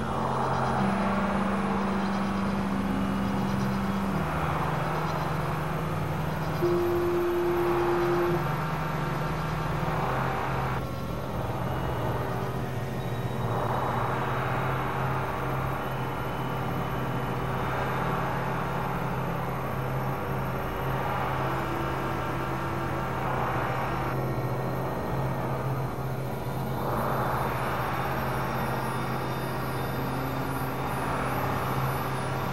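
Experimental synthesizer drone music from a Novation Supernova II and Korg microKORG XL: a steady low held tone under higher held notes that change every few seconds. Washes of rushing noise swell up and drop away several times, cutting off sharply about ten seconds in and again near twenty-four seconds.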